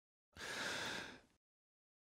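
A person's single breathy sigh, about a second long, swelling in and fading away.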